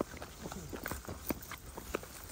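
Faint, irregular light footsteps: soft crunches and taps on dry ground.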